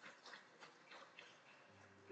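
Near silence with faint, irregular clicks, a few a second. A low steady keyboard note comes in near the end.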